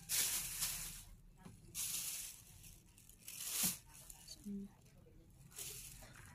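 Plastic garbage bag crinkling and rustling in several short bursts as hands smooth it out and lay handfuls of mung bean sprouts on it.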